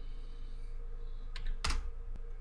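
Computer keyboard keystrokes: a couple of light key clicks about one and a half seconds in, then a louder key press just after, over a steady low hum. The keys are typing the 's' (yes) answers and Enter at PowerShell install prompts.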